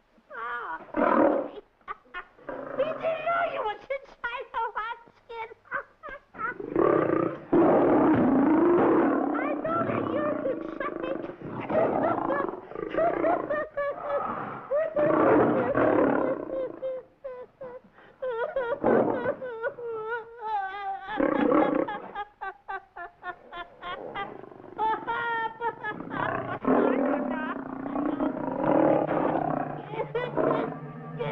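A lion roaring and growling several times, close by, mixed with a man's wordless giggling and vocal noises.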